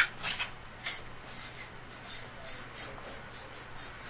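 Marker pen writing on a flip-chart pad: a run of short, high, scratchy strokes, about three or four a second.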